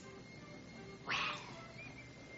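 A woman's breathy, half-whispered "Well," about a second in, over faint background music with a thin, steady high note.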